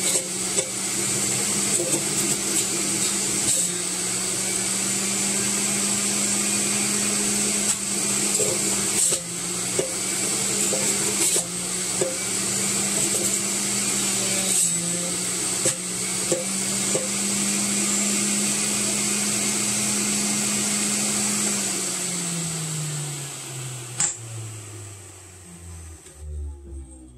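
Electric centrifugal juicer motor running steadily as celery is pressed down its feed chute, its pitch dipping briefly a few times as the pusher bears down. About 21 seconds in it is switched off and winds down with a steadily falling hum, and a sharp click comes near the end.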